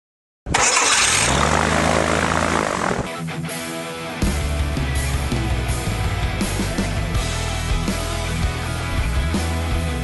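Engine on a propeller test stand starting up with a loud burst, its pitch settling down over a couple of seconds; about four seconds in, rock music with a steady beat comes in and takes over.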